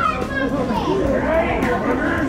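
Children's voices and other talk over the chatter of a crowd; a voice calls out jokingly to the children.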